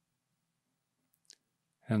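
Near silence broken by a single soft mouth click, the lips parting just before a man's voice begins near the end.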